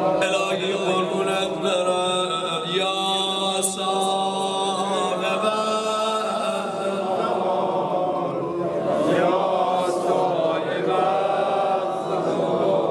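A mourning lament (noha) chanted by many voices together, in long held, continuous lines without a break.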